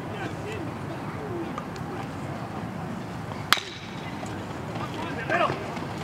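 A single sharp crack of a bat hitting the baseball about three and a half seconds in, over steady chatter from the stands. Shouts and cheering rise near the end.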